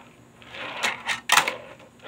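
Tech Deck fingerboard rolling briefly on a wooden tabletop under the fingers, then two sharp clacks of the board hitting the wood, a half-second apart.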